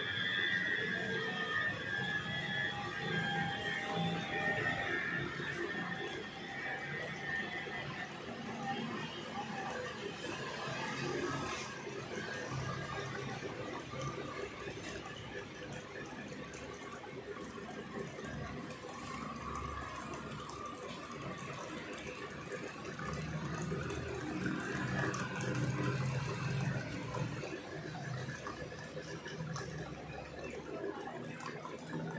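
Water falling and splashing over a small tabletop model, running as a steady patter. Music with held notes fades out over the first few seconds.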